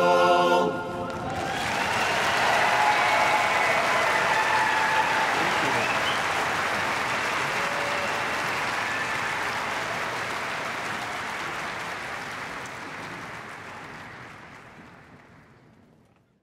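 A men's barbershop chorus releases its held final chord under a second in. A large audience then breaks into applause and cheering, which swells for a couple of seconds and then fades out gradually to silence.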